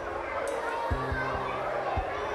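Children's voices and play sounds from a school playground, with a few irregular low thumps.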